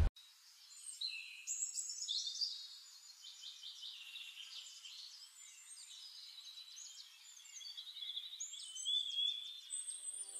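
Birds singing and chirping, with many overlapping high chirps, trills and whistled notes. They are louder in the first couple of seconds and again near the end.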